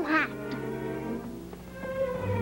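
Soft background film music with long held notes, following a brief swooping voice sound that ends just after the start.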